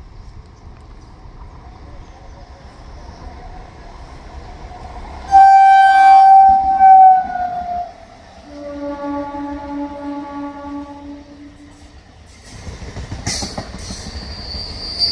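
Three-phase MEMU electric multiple unit approaching and passing close by. About five seconds in its horn sounds loudly for about two seconds and drops in pitch at the end as it goes by. A lower, pulsing tone follows for a few seconds, then wheel rumble and clatter rise near the end as the coaches roll past.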